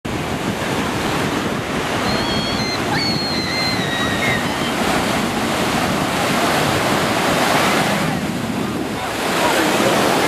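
Ocean surf breaking and washing up the shore in a steady rush, with wind buffeting the microphone.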